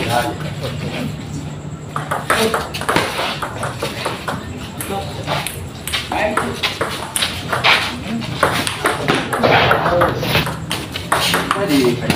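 Table tennis rally in doubles play: the ball clicking off the paddles and bouncing on the table, with many sharp clicks in quick succession.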